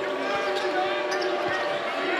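Arena crowd murmur with a basketball being dribbled on the hardwood court, a few faint bounces.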